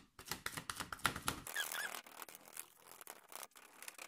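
A kitchen sponge dabbed repeatedly through a stencil onto cardboard: a rapid run of soft taps, thinning out after about a second and a half.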